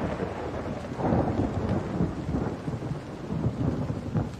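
Rain falling with low rumbles of thunder: a dense, crackling hiss over a deep rumble, a little louder from about a second in.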